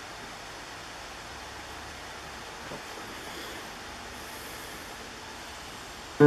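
Steady background hiss of room noise, even and without pitch, with one faint knock about two and a half seconds in.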